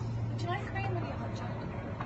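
A steady low mechanical hum runs under faint conversation.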